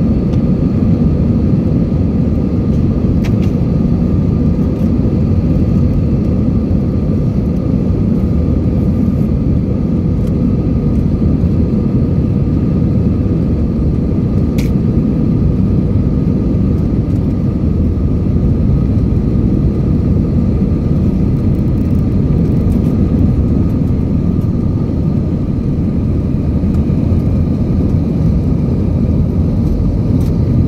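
Jet airliner engines at takeoff power, heard inside the cabin over the wing during the takeoff roll and climb-out: a steady, loud low roar with a faint whine running through it. A single sharp click comes about halfway through.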